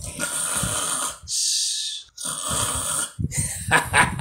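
A person's loud snoring: three long snores one after another, followed by a short laugh near the end.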